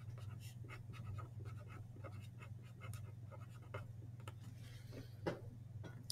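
Felt-tip marker writing on paper: a run of short, faint scratching strokes as words are written out, with one louder brief knock near the end.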